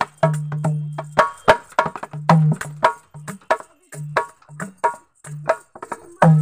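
A dholak, a two-headed barrel drum, played by hand in a quick rhythm: deep ringing strokes on the bass head alternate with sharper, higher strokes on the treble head. The playing thins out past the middle and stops briefly near the end.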